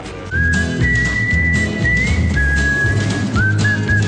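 Background music: a whistled tune of a few long held notes over a bass line and a steady beat.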